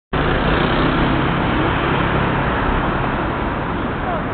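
Steady city road traffic: cars and taxis running through a busy intersection.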